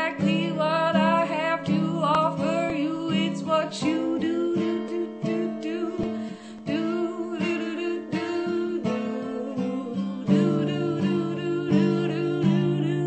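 A woman singing over her own strummed acoustic guitar, her voice wavering in pitch on held notes.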